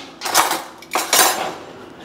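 A kitchen utensil scraping and knocking against a dish, in two short noisy bursts about half a second and a second in.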